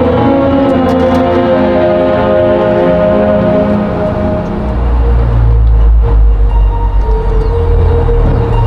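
Marching band brass holding loud sustained chords, which fade about halfway through into a loud, deep low rumble; a new brass chord comes in near the end.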